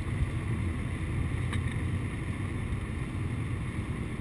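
In-cabin noise of an older Mercedes-Benz sedan cruising at highway speed: a steady low rumble of engine, tyres and wind.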